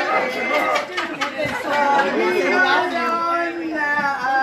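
Several people's voices overlapping in a busy room, a lively chatter with one voice holding a long steady note from about halfway through.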